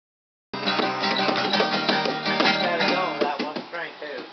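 Acoustic guitar strummed with bongos tapped along. It starts suddenly about half a second in and thins out near the end.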